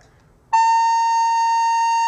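Soprano recorder playing the note A: one long steady note that starts about half a second in and is held.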